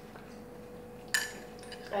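A spoon clinking once against a ceramic bowl about a second in, a short sharp chink with a brief ring, followed by a couple of fainter taps.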